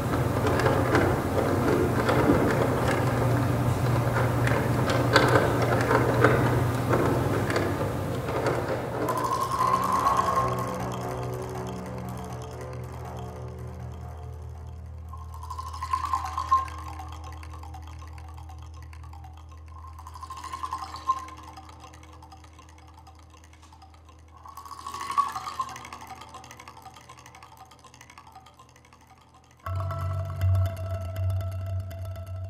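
Electric komungo, the amplified Korean zither, played with a stick: a dense, busy texture over a low steady drone, thinning about a third of the way in to a held low tone with sparse single struck notes about every five seconds, fading gradually.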